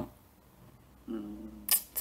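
A pause in a woman's speech: near silence, then a soft hummed 'mm' from her about a second in, and a brief sharp hiss or click just before she speaks again.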